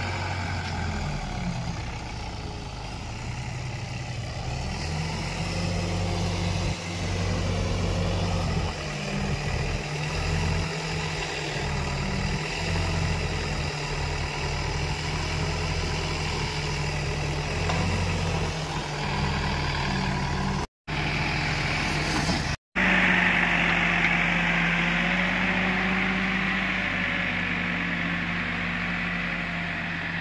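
Escorts Digmax backhoe loader's diesel engine running, its note and load shifting as the loader arm and bucket work the soil. It is broken by two short silences about two-thirds of the way in, after which the engine runs at a steadier, higher note with a hiss on top.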